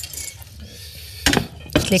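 A ceramic plate being set down on a wooden countertop: a click and then two short knocks against a faint room hiss.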